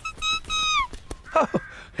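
A cartoon bird's call: one held, whistle-like note of under a second that drops in pitch at the end, answering the sight of the nest as his own. A short spoken 'oh' follows.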